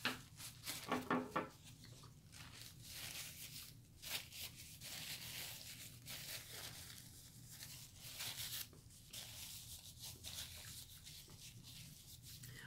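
Faint, irregular rustling and crinkling of a paper napkin as it is folded and worked between the fingers.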